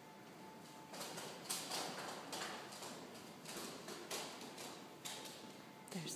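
Footsteps on a stone floor, about two steps a second, starting about a second in.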